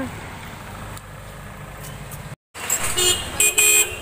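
Low road traffic noise, then, after a brief gap in the sound, a vehicle horn honking in several short loud blasts near the end.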